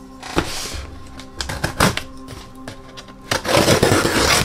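Cardboard box handled with a few knocks and taps, then its packing tape slit with a knife blade, a loud rasping cut near the end, over light background music.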